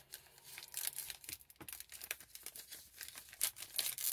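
A Topps Allen & Ginter baseball card pack being torn open by hand. The paper wrapper crinkles and tears in faint, irregular crackles.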